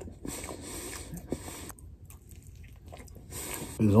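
A person chewing a mouthful of chicken cheesesteak sandwich: soft, irregular mouth and chewing sounds, quiet throughout. A voice starts right at the end.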